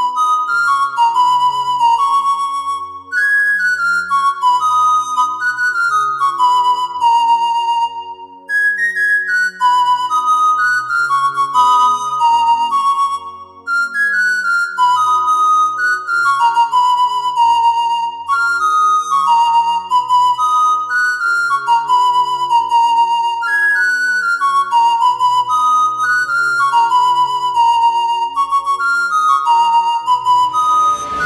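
A flute playing a melody of short falling phrases that repeat every few seconds, over a low accompaniment.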